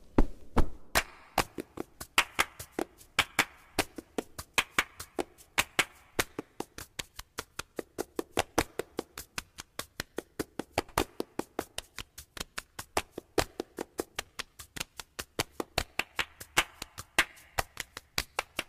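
Background music with a steady clicking percussion beat, about four to five crisp clicks a second.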